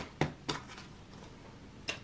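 Polymer £5 banknotes being handled and counted, giving a few sharp, crisp clicks: three in the first half second and one more near the end.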